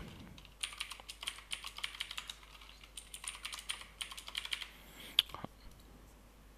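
Computer keyboard typing in several quick runs of keystrokes as a password is entered, followed near the end by one sharper, louder click.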